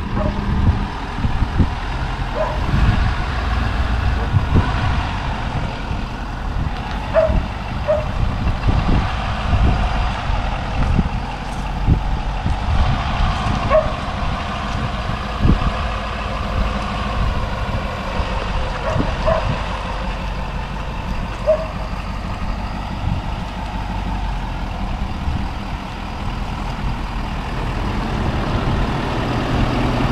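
Ford Super Duty dually pickup's engine running at low speed as it slowly pulls a fifth-wheel trailer forward over gravel, with crunching from the tyres and a few short, high chirps scattered through.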